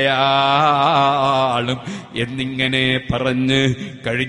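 A man's voice chanting a line of Arabic verse in a slow, drawn-out melodic style: long held notes with a wavering ornament about a second in, a short break near the middle, then another long held note.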